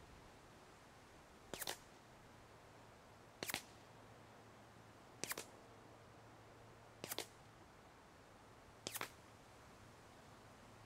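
Integrally suppressed Ruger Mark IV .22 pistol (TBA Suppressors Sicario) fired five times at a steady pace, about one shot every two seconds. Each shot is a faint, short crack.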